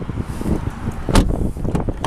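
Wind buffeting the microphone, with low rumbling handling noise as the camera is carried, and one sharp knock a little over a second in.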